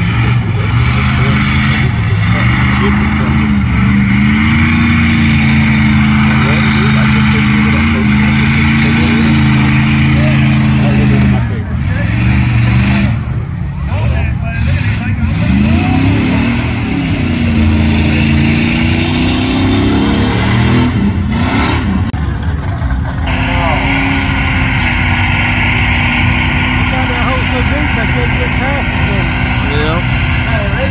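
Mud truck engine running hard through a mud pit, held steady for about ten seconds, then revving up and down in the middle. The engine sound changes abruptly about two-thirds of the way through.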